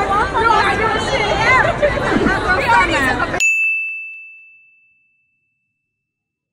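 Many people chattering at once, cut off abruptly about three and a half seconds in by a single bright chime from a logo end card, which rings and fades away over about two seconds.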